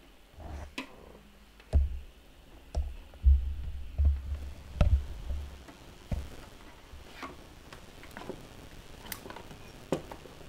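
Handling noises from a turntable and its cables being moved and set up on a table: scattered sharp clicks and knocks, with several dull low bumps in the first half.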